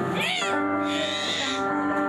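Live amplified music: an electronic keyboard holds sustained chords while a woman sings into a microphone. Her voice makes a quick up-and-down swoop just after the start.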